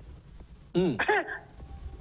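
A man clears his throat once, about three-quarters of a second in, followed straight away by a short voiced sound, over a low steady room rumble.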